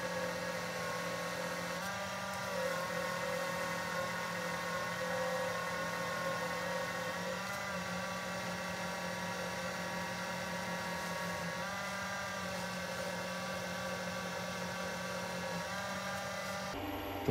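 Wood lathe spinning flannel and cotton buffing wheels at about 1100 RPM, a steady motor hum and whine while a wax-coated pen blank is buffed against them. The pitch dips slightly a few times.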